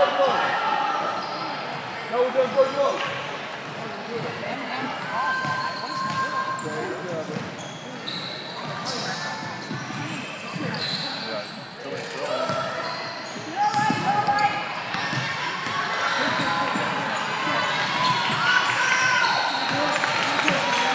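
Indistinct voices calling out and chattering in a large gymnasium, with a basketball bouncing on the hardwood floor. Louder bursts come about two seconds in and again around fourteen seconds.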